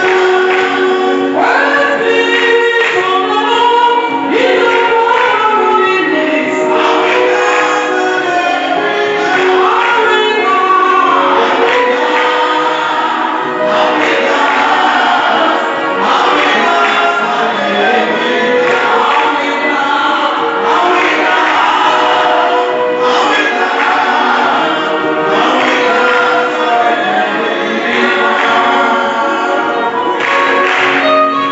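Congregational church singing in a gospel style, led by a woman and a man singing into microphones with many voices joining in, steady and loud throughout.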